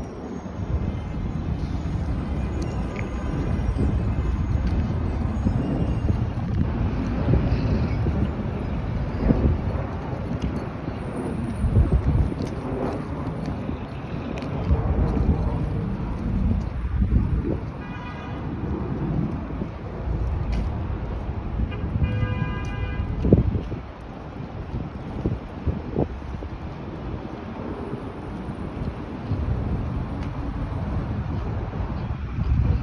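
Street ambience recorded on a walking phone: passing traffic and wind gusting on the microphone in an uneven low rumble. Two short car horn toots sound a little past the middle.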